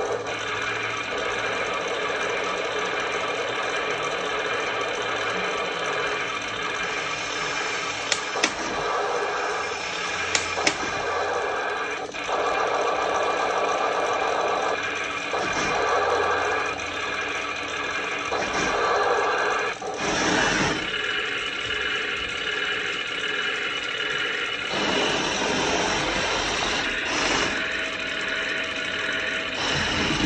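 Heng Long RC tank's sound unit playing a simulated tank engine running from its small speaker, with a few sharp clicks about eight and ten seconds in. The sound changes near twenty seconds and again about twenty-five seconds in.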